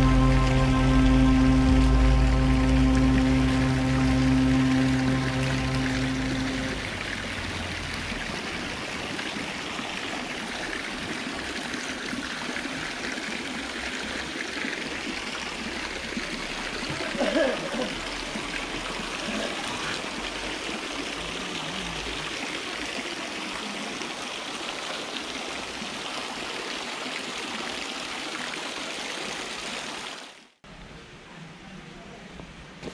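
Water pouring steadily from stone spouts and splashing onto stone paving, a continuous rushing splash. A music track of long held tones fades out in the first several seconds, and a brief louder splash or sound comes about halfway through.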